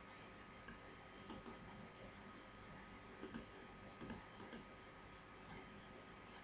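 Faint computer mouse clicks, a scattered handful over a few seconds, against near-silent room tone.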